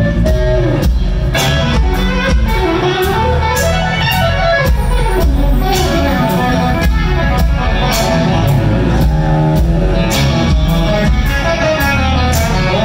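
Live electric blues-rock band: a lead electric guitar solo with bending, gliding notes over a steady drum beat and bass.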